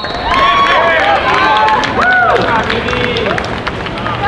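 Several voices shouting and calling out over one another, short raised calls overlapping throughout, as at a water polo game.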